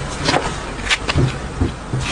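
Crisp slices of raw radish being handled and pressed into a rose shape on a cutting board: a few irregular crackles and taps.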